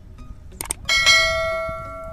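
Subscribe-button animation sound effect: a couple of quick mouse clicks, then a bell chime that rings out and fades over about a second.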